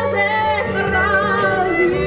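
Gypsy jazz band playing live: violin, acoustic guitar, double bass and drums under a held melody line that wavers with vibrato and steps between long notes.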